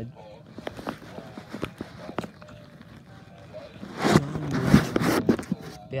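Hands handling a plush animatronic toy: scattered sharp clicks and rustles in the first half. About four seconds in there is a louder burst of rubbing noise with a low mumbled voice.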